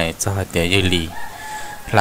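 A man's narrating voice, then a rooster crowing faintly in the background, its long held note heard in the pause in speech in the second half.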